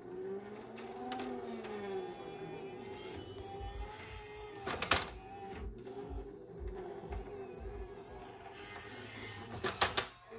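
Sony MDP-850D LaserDisc player mechanism working through an auto-reverse as the optical pickup is carried round to the disc's other side. A motor whine glides up and down in the first two seconds, then a steady hum with low pulsing runs on. Sharp clicks come about five seconds in and again near the end.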